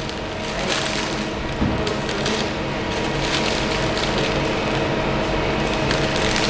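Clear plastic candy bag crinkling and rustling in a steady run of small irregular crackles as a hand reaches into it, over a low steady hum.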